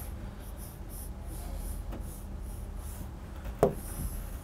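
Faint scratching of a stylus on an interactive touchscreen display, in short repeated drawing strokes, over a low steady hum. A short vocal sound comes near the end.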